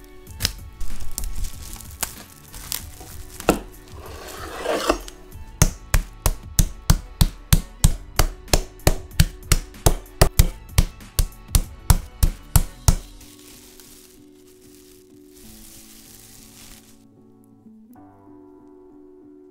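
Chicken breasts under plastic wrap are pounded flat on a wooden cutting board with the flat of a cleaver. A few scattered thuds and a crinkle of plastic wrap lead into a steady run of about three blows a second, which stops about two-thirds of the way through, leaving soft background music.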